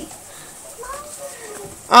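A faint, drawn-out vocal sound from a child, starting about a second in. It is a brief lull between louder talk, with a murmured "um" at the very end.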